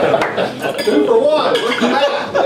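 Clinks of cutlery and dishes at a dining table, under the voices of a group of men.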